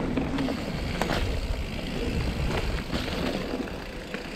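Mountain bike riding fast down a rough dirt trail: steady tyre rumble and drivetrain rattle, with a few sharp knocks from the bike over bumps.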